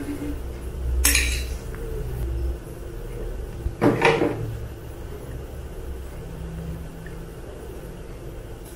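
Stainless-steel chopsticks clinking against a ceramic bowl while noodles are stirred and lifted: two sharp clinks, about a second in and about four seconds in, the second the louder, over a low rumble.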